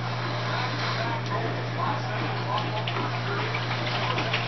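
Faint, indistinct background speech over a steady low electrical hum.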